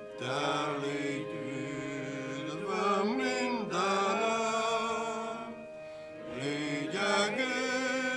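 Congregation singing a slow hymn with long held notes, accompanied by a digital piano.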